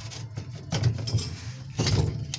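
Plastic fuel pump assembly and cut gas cap being twisted by hand onto the fill neck of a metal fuel tank: a few short scraping rubs, over a steady low hum.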